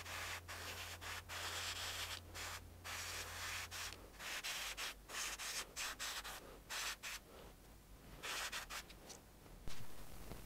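Airbrush spraying acrylic paint in many short stop-start bursts of hiss.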